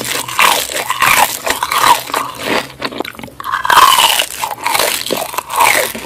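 Close-miked crunching as crispy-skinned fried food is bitten and chewed, in a quick run of sharp crunches. There is a brief lull about halfway through, then louder crunching again.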